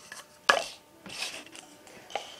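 White plastic cups handled on a tabletop: one sharp clack about half a second in as a cup is knocked free of the stack or set down, then a few lighter knocks and rustles.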